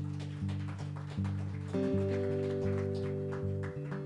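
Acoustic guitar starting a song's intro: a steady picked pattern of low notes, with higher ringing notes joining about two seconds in.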